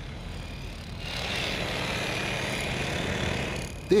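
Electric demolition hammer chiselling out the soil and paving around a bollard's base, mixed with passing road traffic including a lorry; the steady din grows louder about a second in.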